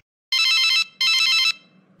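A telephone ringing as a call goes through: two short electronic rings, each about half a second long.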